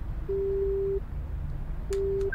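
Telephone ringing tone: one steady low beep lasting under a second, then a second beep starting near the end, over a low steady car-cabin rumble.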